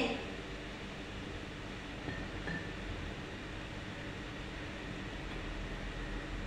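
Steady background room noise: an even hiss with a faint low hum, no distinct events.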